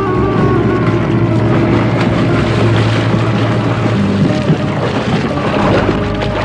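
Cartoon sound effect of a small boat's outboard motor running: a steady low drone over a noisy wash.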